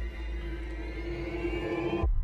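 Dramatic background score: sustained held tones over a deep rumble, with a thin high tone rising slowly in pitch, building tension.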